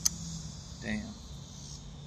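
Steady high-pitched background chorus of insects, with a low steady hum beneath it and a single sharp click at the very start.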